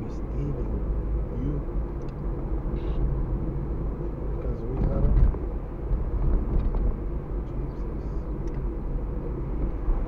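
Car cabin noise of a car driving on a city street: a steady low rumble of engine and tyres, with a brief louder thump about five seconds in.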